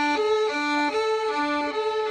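A violin and a viola bowing together in unison on the D string, the fourth finger tapping down and up so the sound switches evenly between the open D and the fourth-finger A, a little under three notes a second. This is a slow left-hand finger exercise.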